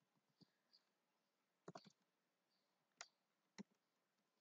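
Faint computer keyboard keystrokes: a handful of separate clicks while code is typed, with a quick run of a few keys about two seconds in.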